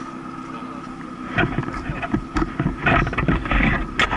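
Honda CB750 air-cooled inline-four motorcycle engine idling steadily. From about a second and a half in, it is drowned by a louder, uneven rumble and rustle.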